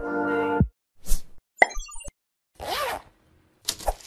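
Animated logo sting sound effects: a held synth chord cuts off, then a swish, a quick run of pops and blips, a whoosh with a tone sliding up and back down, and a couple of sharp hits near the end.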